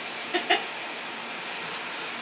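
Steady rushing hum of an RV's roof air conditioner running through its ceiling ducts, with two brief vocal sounds like a short laugh near the start.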